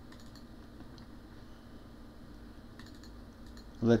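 A computer keyboard being typed on: two short clusters of faint key clicks, one at the start and one about three seconds in, over a low steady room hum. A man's voice begins right at the end.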